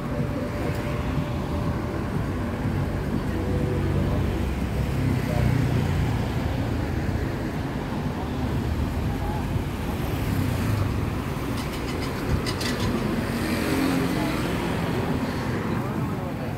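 Street traffic: motorbike and car engines running and passing, a continuous low rumble that swells and fades, with voices of passers-by in the background and a few short sharp clicks about twelve seconds in.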